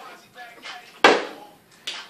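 A partly filled plastic water bottle, flipped, lands upright on a wooden table with a sharp thud about a second in. A second, lighter knock follows near the end.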